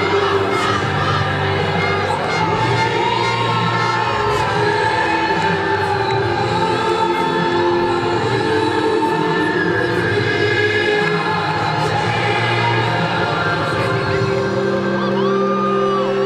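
Music with singing voices, over a stadium crowd cheering.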